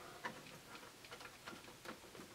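A few faint, scattered ticks and taps from hands working the hood and latches of an HG P408 1/10 scale RC Humvee body.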